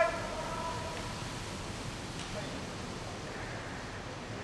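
A brief high shouted call right at the start, then a steady, even background noise of a large indoor velodrome hall as a bunch of track bikes passes on the wooden boards.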